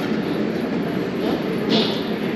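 Steady din of a busy buffet dining room, a dense mix of background chatter and clatter with no clear voice standing out, and a short hiss near the end.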